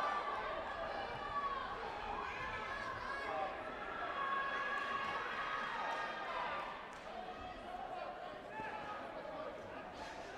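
Several people talking at once across a sports hall, the voices overlapping and indistinct, with a few faint knocks in the second half.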